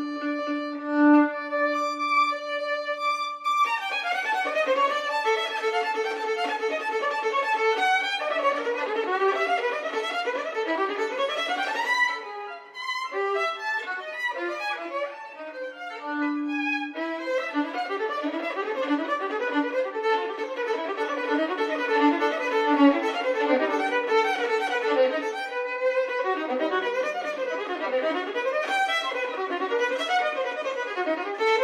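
Unaccompanied solo violin. It holds one long note for the first few seconds, then plays fast running passages of quick notes that move up and down.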